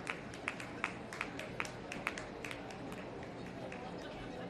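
Quick, sharp clicking footsteps, about three a second and slightly uneven, over the steady murmur of a crowd of spectators.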